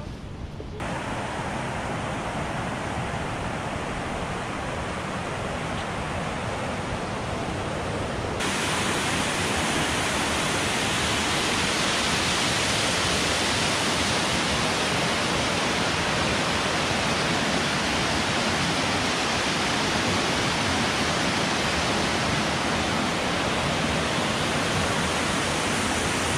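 Steady rush of a fast, white-water creek and waterfall. It gets abruptly louder about a second in and again about eight seconds in, then holds steady.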